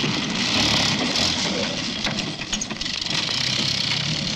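Mini Moke's small four-cylinder engine running as the open utility car drives over rough ground, with a brief dip in level about halfway.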